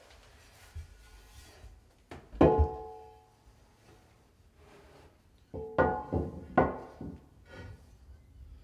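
A ceramic undermount sink knocking against the underside of a granite countertop as it is pushed up into place for a dry fit: two sharp knocks about two seconds in, each ringing briefly, then a cluster of three or four more knocks near the end.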